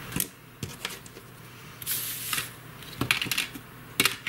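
Light handling noises: a few small clicks and a brief rustle about two seconds in, as a knitted shawl and yarn are moved about on a tabletop.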